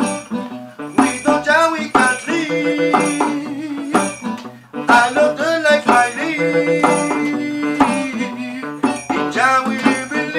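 Acoustic guitar strummed in a reggae groove, accompanied by a hand drum played with the hands, with a strong accent about once a second.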